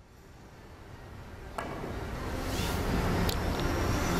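Three-cushion carom billiards bank shot: a sharp click of the cue tip striking the cue ball about one and a half seconds in, then another ball click near the end as the balls run around the table. Under the clicks, a crowd murmur swells steadily and is loudest near the end; the shot misses the yellow object ball.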